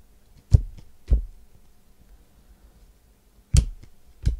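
Trading card packs and cards being handled and knocked against the table: three dull thumps, two close together early and one near the end.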